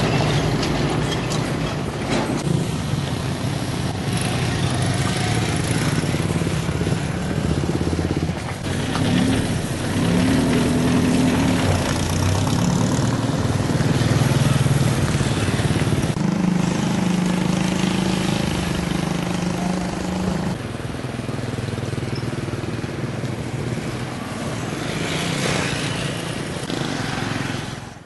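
Small motorcycle and scooter engines running and passing close by, their pitch shifting as they ride. In the second half one holds a steadier, higher note for several seconds before it drops away.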